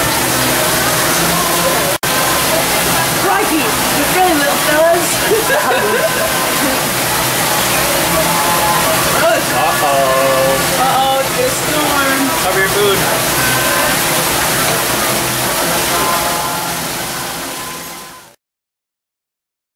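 Busy restaurant babble of many overlapping voices over a steady rush of running water. The sound cuts out for an instant about two seconds in and fades out near the end.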